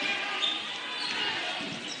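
Crowd chatter echoing in a school gymnasium, with a basketball being dribbled on the hardwood.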